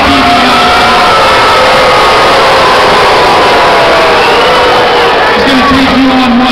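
Loud arena crowd cheering and yelling, with music playing over the arena PA.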